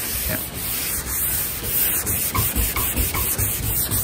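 320-grit sandpaper on a round hand-held pad rubbed over a car's painted hood, a continuous rubbing noise with uneven rises in strength from stroke to stroke.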